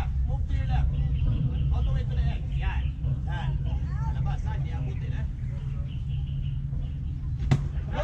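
Voices of players and onlookers chattering and calling out around a baseball diamond, over a steady low rumble. Near the end comes a single sharp crack as a pitch arrives at the plate.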